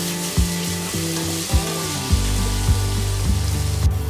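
Chopped onions and tomatoes sizzling in hot oil in a stainless steel pot while a spatula stirs them. Background music with a steady beat plays underneath.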